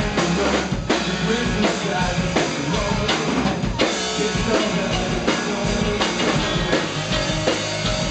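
A rock band playing live in an instrumental passage: a drum kit beating steadily under electric guitars and bass guitar.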